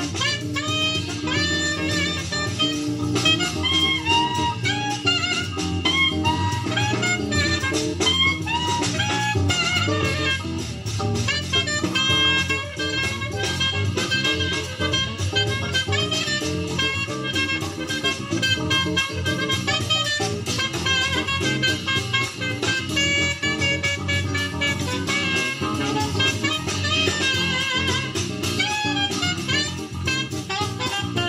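A live Brazilian jazz quartet playing: saxophone carrying a melodic lead line over acoustic guitar, electric bass and drum kit, continuously.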